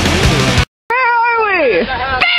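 Loud rock music that stops abruptly about a third of the way in; after a brief silence, a person's voice gives one long cry that falls steadily in pitch, with a shorter call near the end.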